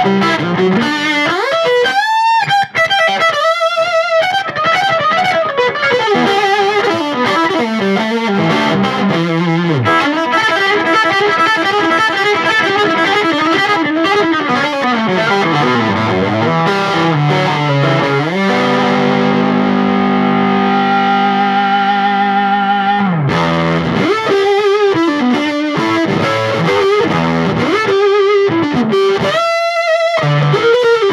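Overdriven electric guitar: a Gibson Les Paul's humbucker pickups played through a 5-watt Oldfield Woody combo with an 8-inch speaker, cranked wide open with the boost on. It plays a lead with string bends near the start and again near the end, and holds one chord ringing for several seconds in the middle.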